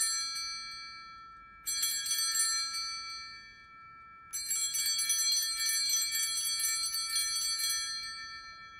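Altar bells (Sanctus bells) rung at the elevation of the consecrated host: shaken peals of quick, bright strikes. One peal is fading as it begins, a second starts just under two seconds in, and a longer third starts about four seconds in and dies away near the end.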